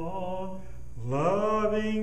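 A man singing slowly and unaccompanied, holding long drawn-out notes; one note fades out about half a second in, and about a second in his voice slides up into a new long note.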